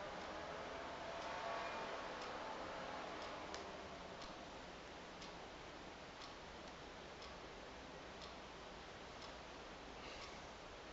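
Faint, regular ticking of a clock, about one tick a second, over a low room murmur that fades after the first few seconds.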